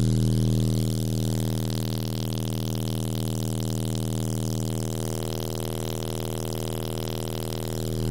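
Timpano TPT-3500 12-inch car-audio subwoofers playing a steady, loud low bass test tone with a buzzy stack of overtones, driven at about 2,000 watts just short of the amplifier's clipping point. The tone eases slightly about a second in.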